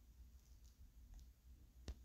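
Near silence over a low steady hum, broken once near the end by a single sharp click: a fingertip tap on a phone's touchscreen.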